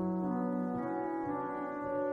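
Pipe organ playing a quiet passage of sustained chords that shift slowly, without the deep pedal bass.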